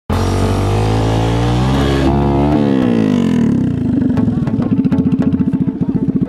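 Honda Grom's 125 cc single-cylinder engine with an aftermarket Arrow exhaust running at steady revs, rising briefly about two seconds in, then falling back to a fast, even pulsing idle.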